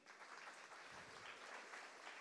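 Audience applauding, a steady round of many people clapping, heard faintly.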